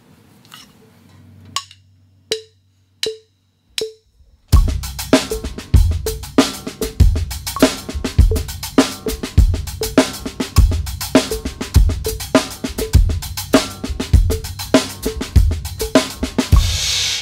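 Four sharp clicks counting in. Then, from about four and a half seconds in, a drum kit plays a paradiddle groove in quintuplets, five notes to the beat: hi-hat in the right hand, snare in the left, with accents and bass drum kicks.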